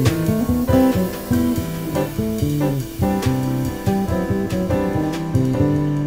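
Live jazz trio playing: a five-string electric bass plucks a busy line of low notes under keyboard chords, with drum-kit cymbal hits now and then.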